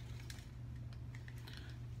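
Faint, scattered rustles and small handling sounds of stretchy jogger-pant fabric being held up and moved in the hands, over a steady low hum.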